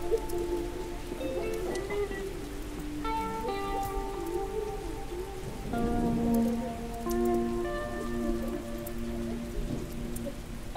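Slow ambient music of held chord tones, changing every second or two, layered over a steady rain recording with fine raindrop ticks.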